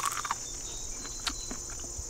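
A crisp bite into a raw ear of sweet corn right at the start, then a few faint chewing clicks, over a steady high chirring of insects.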